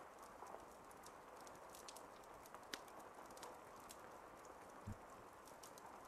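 Near silence: faint room tone with scattered faint clicks, and one soft low thump about five seconds in.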